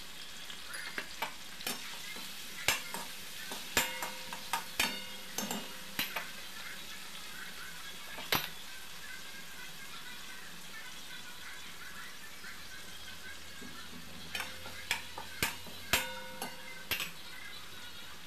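Chopped tomatoes and green chillies sizzling steadily in oil in a stainless-steel kadhai, while a spatula stirs and taps against the steel pan. The taps come in clusters, the louder ones ringing briefly, with a stretch of only sizzling in between.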